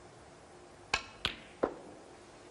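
Snooker shot: a sharp click of the cue tip striking the cue ball, a second crisp click a third of a second later as the cue ball strikes an object ball, then a duller knock of a ball against the cushion or pocket.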